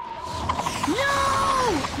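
A boy's long, drawn-out shout of "No!" about a second in, over a cartoon sound effect of clicking, rattling machinery.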